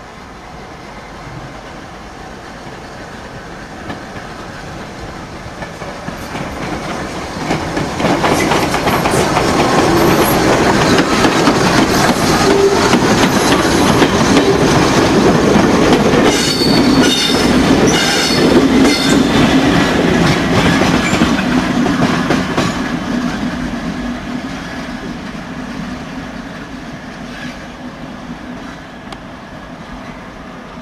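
Merchant Navy class steam locomotive 35028 Clan Line and its coaches passing slowly on curved track, wheels clicking over rail joints, building up to a loud stretch through the middle and then fading. About halfway through there is a brief high squeal of wheel flanges on the curve.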